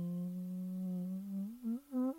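A man's voice humming one long steady low note, which wavers and climbs in pitch near the end.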